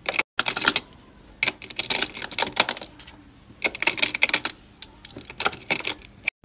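Polished mookaite jasper flat stones clicking against each other as a hand rummages through a plastic bin and picks them out: irregular clusters of sharp clicks.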